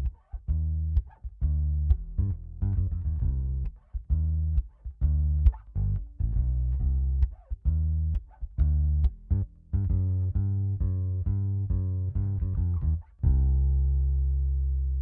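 Crafter BA-400EQ acoustic bass guitar played solo: a line of plucked bass notes, some short and detached, ending on one long note that rings and slowly fades near the end.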